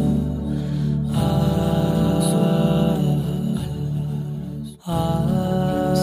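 Background vocal music: sustained, wordless 'ah' chanting held on long gliding notes, with a brief break near the end.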